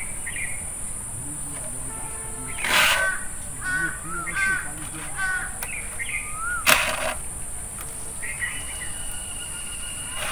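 Birds calling, with two loud, harsh, caw-like calls about three and seven seconds in, and shorter wavering whistled calls between them.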